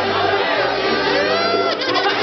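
Live band music, a bass line moving in held steps under the other instruments, with crowd chatter over it.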